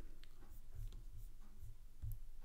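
Faint, light clicks of a computer mouse, a few scattered ticks over the two seconds.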